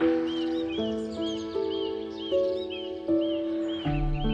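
Gentle piano music with slowly changing held notes, and over it a songbird repeating a short rise-and-fall whistled note about three times a second.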